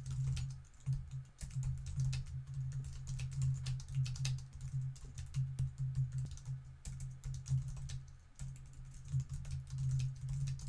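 Typing on a computer keyboard: a fast, irregular run of key clicks.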